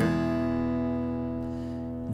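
An E major chord strummed on an acoustic guitar, ringing out and slowly fading.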